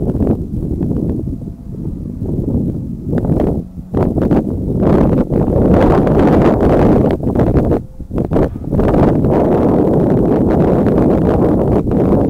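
Wind buffeting the microphone: a loud, gusting rumble that rises and falls unevenly, with a few brief lulls.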